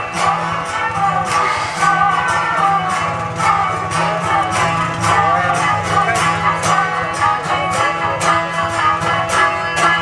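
Balochi folk music on a long-necked plucked lute, strummed in a steady rhythm over a low drone, with a higher melody line running above it. A man's singing voice comes in right at the end.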